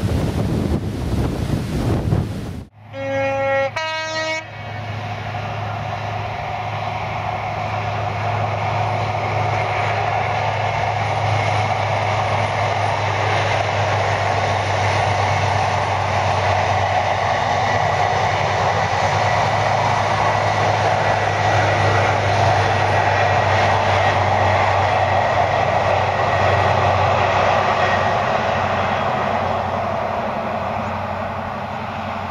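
Wind buffeting the microphone, then a two-tone train horn sounds, one short note after another about 3 seconds in. It is followed by an InterCity 125 High Speed Train's diesel power car running steadily with wheel and rail noise as the train passes, building gradually.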